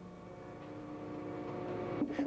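Schwabe DG75 straight-ram hydraulic platen press running, its hydraulic unit giving a steady hum of several fixed pitches that grows louder as the press opens after the cutting stroke.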